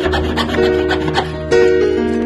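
A jeweller's saw cutting through a 999 fine silver bar in quick back-and-forth rasping strokes, over background music.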